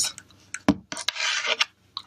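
Handling noise: a sharp click, a few small clicks, then a short rasping rub, from hands picking a penny up off the table and handling a plastic phone case.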